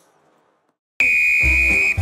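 Silence, then about a second in a single long whistle blast: one steady, piercing high tone held for about a second before it stops. A music track with a deep bass beat comes in under it.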